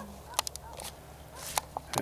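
Several sharp clicks of camcorder buttons being pressed, with some handling noise, over a faint low steady hum.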